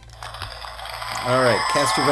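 A played-back music track cuts off; after about a second of faint hiss, a man's voice starts speaking.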